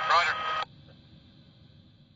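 A voice heard over a two-way radio, thin and narrow-sounding with a steady tone under it. The transmission cuts off abruptly just over half a second in, leaving a faint hiss that fades away.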